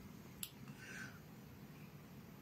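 Faint room tone with one short, sharp click about half a second in.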